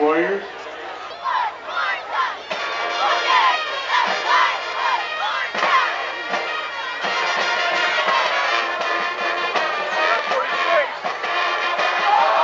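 Football crowd shouting and cheering, many voices at once, quieter for the first two seconds or so and then fuller and louder for the rest.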